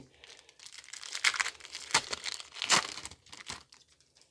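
A Pokémon booster pack's foil wrapper being torn open and crinkled: a run of irregular crackles and rips, the loudest between about one and three seconds in, stopping shortly before the end.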